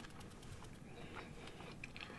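Faint chewing with the mouth closed: a string of soft, irregular mouth clicks picked up by a close microphone.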